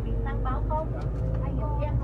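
Steady low engine and road rumble heard inside a van's passenger cabin, with faint voices over it.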